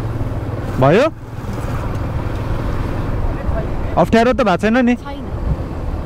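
Motorcycle engine running steadily at low road speed, with wind rushing over the handlebar-mounted microphone.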